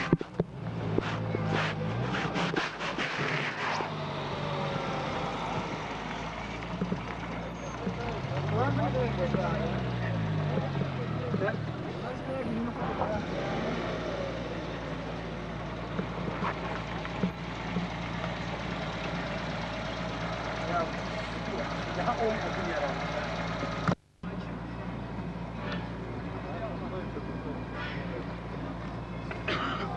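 Car engines running amid indistinct chatter of people. One engine's pitch rises and falls about eight to eleven seconds in, and the sound drops out briefly about 24 seconds in.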